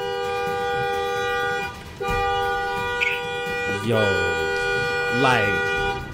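Car horn held down in two long honks, a steady two-note blare, heard from inside the car. The first breaks off just before 2 seconds; the second starts right after and carries on under voices.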